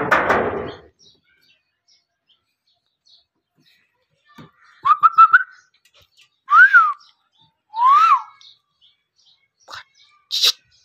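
Dog whining in short high squeaks, then two longer squeals that rise and fall in pitch, as it sniffs after a rat in a gap in the wall. A loud noisy stretch at the very start stops within the first second.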